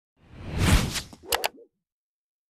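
Logo intro sound effect: a whoosh that swells and fades over about a second, followed by two quick sharp pops.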